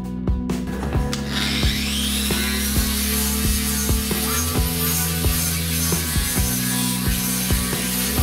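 A small hand-held grinder spins up about a second in, its whine rising and then holding steady as the disc grinds the steel lower edge of a car door. Background music with a steady beat plays throughout.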